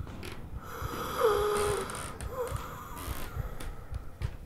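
A person's voice making low drawn-out breathing sounds, one held for under a second about a second in and a shorter one after it.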